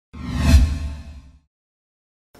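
An intro whoosh sound effect with a deep low boom: a single swoosh that swells to its peak about half a second in and fades away by about a second and a half.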